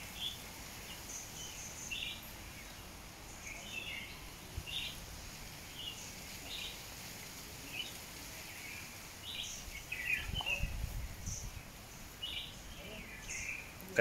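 Small birds chirping in short calls scattered irregularly over faint outdoor background noise, with a brief low rumble about ten seconds in.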